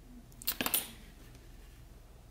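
A metal blade scraping and clicking against a metal coin-cell battery as its wire tab is pried off: a short cluster of sharp clicks about half a second in.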